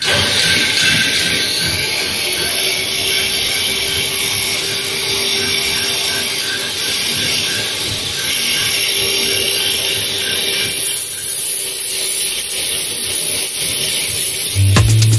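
Heavy engine lathe turning a large steel shaft while the cutting tool takes a cut: a loud, steady machining hiss with a faint steady whine. The hiss eases somewhat near the end.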